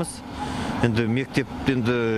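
A man speaking in short phrases, with a steady outdoor noise audible in the pause before his words.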